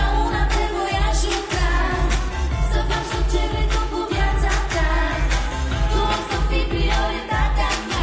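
A woman singing live into a handheld microphone over a loud pop backing track with a steady, heavy bass beat.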